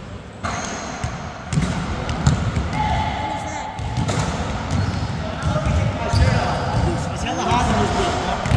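Basketballs bouncing on a hardwood gym floor: a series of irregular low thumps as several players dribble and shoot at once.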